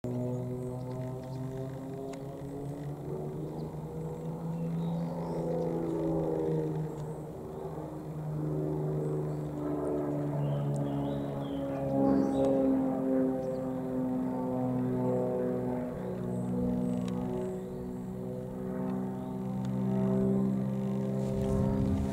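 XtremeAir XA42 aerobatic monoplane's six-cylinder engine and propeller droning as it flies its display, the pitch bending slowly up and down as it manoeuvres.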